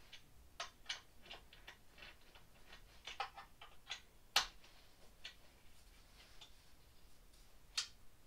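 Light, irregular clicks and taps of a hand tool and metal hardware as screws and attachment brackets are fitted to a wooden crib side by hand, with a sharper, louder click a little over four seconds in and another just before the end.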